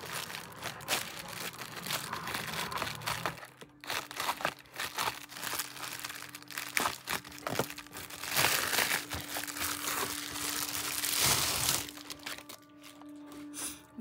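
Plastic bubble mailer being handled and opened: a run of crinkling and rustling of the plastic, loudest about eight to twelve seconds in.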